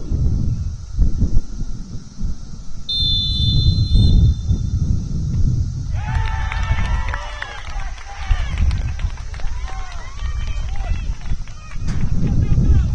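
Referee's whistle blowing one steady blast of about a second and a half, about three seconds in, followed from about six seconds by players' shouts and calls. Wind buffets the microphone with a gusty low rumble throughout.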